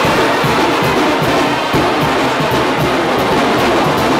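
Mexican banda (brass band) playing live: clarinets, trumpets and sousaphones over a steady beat on bass drum, snare and cymbals.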